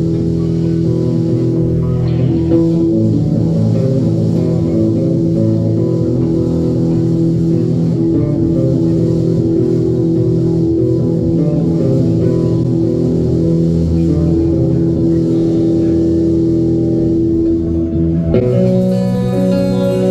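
Live rock band playing an instrumental passage without vocals: electric guitars and bass guitar holding sustained notes over the band, changing abruptly to a new part about 18 seconds in.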